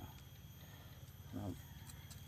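Quiet, steady low background hum, broken by one short spoken word about one and a half seconds in.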